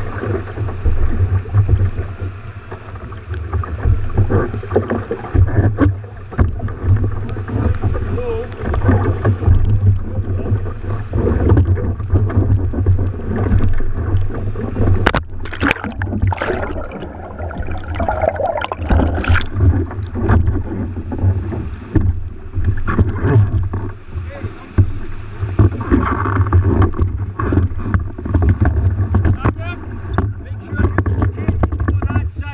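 Rough sea water sloshing and splashing around a sea kayak, with a heavy, pulsing low rumble as waves and wind buffet the camera housing. A few sharp splashes or knocks come about halfway through.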